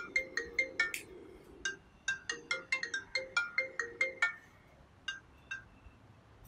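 iPhone ringtone for an incoming call: a quick run of short, bright chiming notes, several a second, that stops about four seconds in, followed by a couple of fainter notes.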